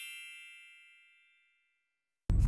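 A bright, bell-like chime sound effect for an animated logo, ringing with many high tones and fading out within about a second.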